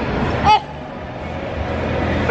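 Steady background hubbub of a busy shopping mall, with a single short, high-pitched voice sound about half a second in.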